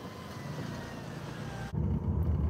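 A car driving slowly, its engine and tyre noise heard from inside the cabin. Near the end the sound turns abruptly louder and deeper, a low rumble.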